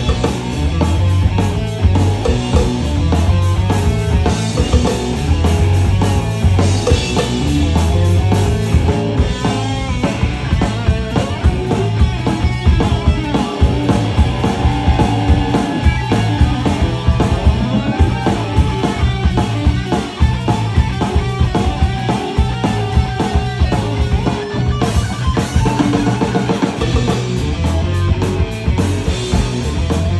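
A rock band playing loud live: electric guitar and drum kit, with heavy bass drum.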